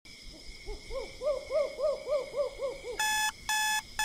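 Owl hooting sound effect: a run of about ten short hoots, each rising and falling in pitch, swelling and then fading. About three seconds in, an electronic alarm starts beeping, about two beeps a second.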